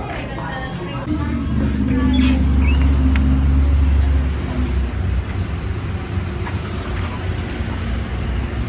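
A motor vehicle's engine running close by in the street: a steady low rumble, loudest from about a second in until about four and a half seconds, then easing off.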